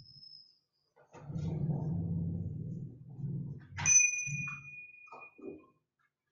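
A small metal bell struck once about four seconds in, ringing clearly for about a second before fading, after a low muffled sound.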